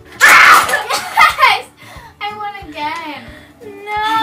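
A wooden Jenga tower collapsing, with a sudden loud shriek over the blocks' clatter just after the start, then two people laughing from about two seconds in.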